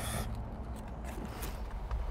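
Faint rustling and light scraping of a paper fast-food wrapper being handled, a few short crinkles over a low steady rumble.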